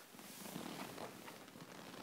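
A bulldog breathing noisily, with a rough, purr-like rumble, as it plays with a plush toy in its mouth.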